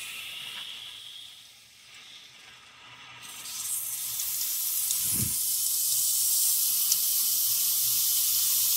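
Water rushing through a newly fitted outdoor tap into a garden hose as the tap is opened: a high hiss that grows louder from about three seconds in and then holds steady, with water spraying from the leaking tap-to-hose connection. A soft knock about five seconds in.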